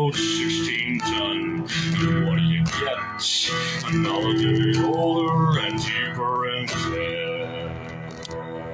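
A man singing close to the microphone over a strummed acoustic guitar.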